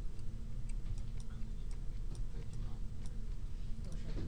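A series of light computer mouse clicks, roughly two a second and unevenly spaced, over a steady low room hum.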